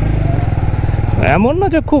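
Honda CBR150R's single-cylinder engine running steadily as the motorcycle is ridden. A man's voice comes in just over a second in.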